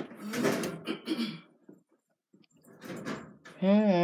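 A person's voice, soft and breathy for the first second or so, then a pause of about a second, with clearer speech starting near the end.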